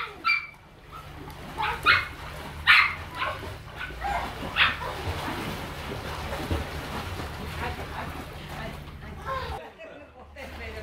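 A small dog barking and yipping in short, sharp calls, about four of them in the first half, over splashing and children's voices.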